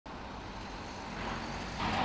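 Steady street traffic noise: a low, even hum of passing road vehicles, growing slightly louder near the end.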